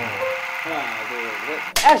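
Faint talk in a room, then a loud shout of "Action!" near the end calling the start of a take.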